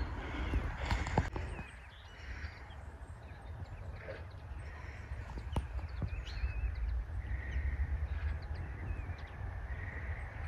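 Outdoor rural ambience: birds chirping and calling on and off over a steady low rumble.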